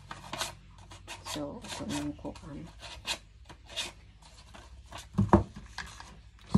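Paper rustling and scraping in quick strokes as a strip of yellow paper is handled and folded by hand, with a louder thump about five seconds in.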